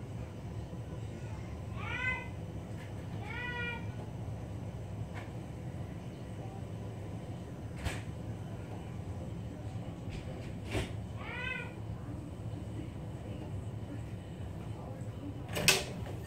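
A cat meowing: three short calls that rise and fall in pitch, about two, three and a half and eleven and a half seconds in, over a steady low hum. A couple of faint knocks fall between them, and a louder knock comes just before the end as the phone is picked up.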